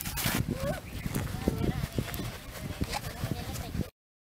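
Indistinct voices with a string of irregular light knocks and taps over a noisy outdoor background; the sound cuts off abruptly just before the end.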